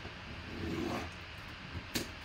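Faint handling sounds of a shrink-wrapped cardboard box being turned around on a mat, with a light tap near the end.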